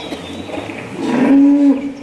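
A cow mooing once: one low, held call starting about a second in and lasting under a second.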